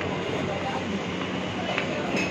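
Steady background hubbub of a busy market passage: a constant rumble of crowd and street noise with indistinct voices.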